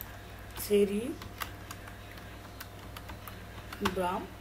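A few scattered light clicks spread through the pause, with one short voiced sound just under a second in.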